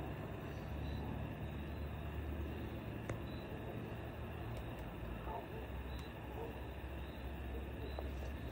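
A 12-volt in-line bilge blower running steadily with a low hum as it drives mist from a pond fogger through a drain-pipe tube.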